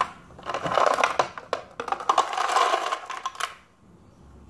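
Ice cubes clattering and scraping against a metal spoon and their container as they are scooped out, with many sharp clinks; it stops about three and a half seconds in.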